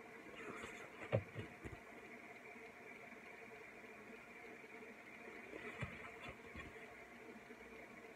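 Quiet room with a faint steady hiss, broken twice by brief handling noises as the paper sheets of a sticker pad are turned: a few short clicks and taps about a second in and again just before six seconds.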